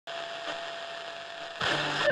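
A steady hiss with one thin, faint steady tone over it. About one and a half seconds in, louder pitched sound cuts in, the start of an intro with music.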